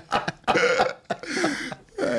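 Men laughing hard: a quick run of short laughs, then two longer, breathy, throaty bursts of laughter.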